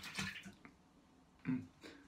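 A disposable razor rinsed in a small container of water: a brief faint splashing that dies away within half a second. A short low vocal sound follows about a second and a half in.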